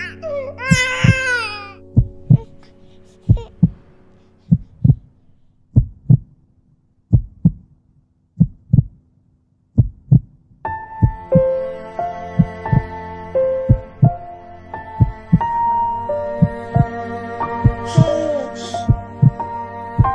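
A baby crying in the first two seconds, then a slow, steady heartbeat, each beat a double knock, about one every 1.2 seconds. Soft music with held notes joins over the heartbeat about halfway through.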